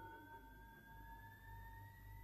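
Near silence with faint electronic tones: one held steady, another gliding slowly upward in pitch, over a low hum.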